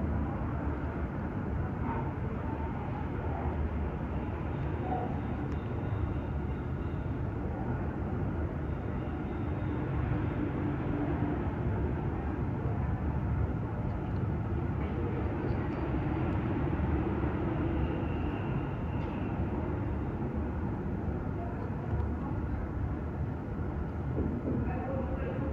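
Steady low rumbling background noise, with faint indistinct voices now and then.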